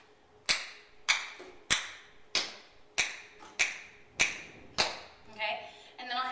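Tap shoes striking a wooden floor: eight sharp, evenly paced taps, a little under two a second, keeping a steady beat.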